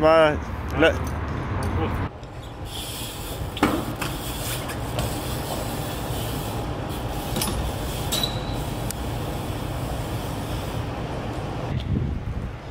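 A BMX bike rolling over tiled paving: a steady hiss of tyre and street noise with a few sharp clicks. A man's voice speaks briefly at the start.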